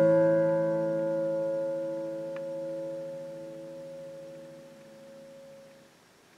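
A final strummed guitar chord ringing out and slowly dying away, the higher strings fading first, until it is gone at the end of the song. There is a faint small tick about two and a half seconds in.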